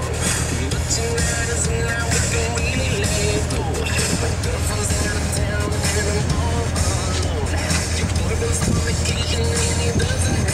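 Corvette Z06 V8 engine running with a steady low rumble as the car creeps downhill at a crawl, with music playing over it.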